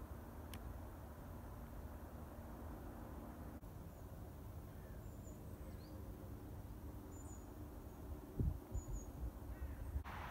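Quiet open-air background: a steady low rumble with a few faint, short, high bird chirps scattered through it, and a few low thumps near the end.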